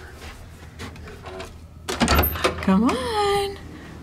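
A door latch and lever handle clicking with a low thud about halfway through as the door is opened, followed by a short rising-and-falling vocal exclamation.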